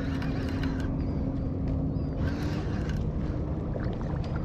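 Steady low motor hum from a fishing boat over wind and water noise, with a few faint ticks; the hum fades out about three seconds in.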